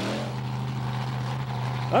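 Monster truck engine running at a steady, held pitch.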